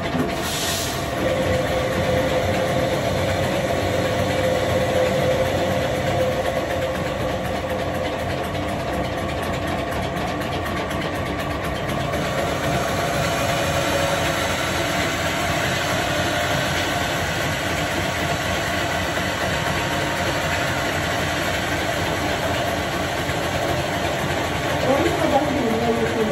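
An electric household flour mill (chakki) running steadily while grinding grain into flour: a continuous mechanical drone with a constant hum.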